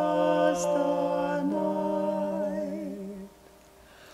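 A man and a woman singing unaccompanied in two-part harmony on long held notes; the singing stops about three seconds in.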